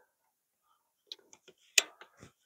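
Woven wire field fence being pulled taut with a fence stretcher: a few light metallic clicks starting about a second in, then one sharp snap near the end as the slack comes out.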